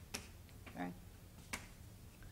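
Faint, sharp taps of writing on a board: a strong one just after the start and another about a second and a half later. A brief soft voice sound comes between them.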